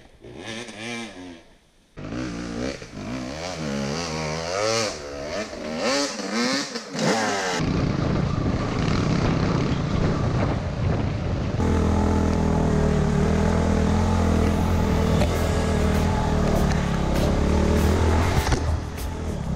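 Dirt bike engine revving up and down repeatedly. About seven and a half seconds in, the sound changes abruptly to a motorcycle running at a steadier pace, heard from on board with wind and trail noise.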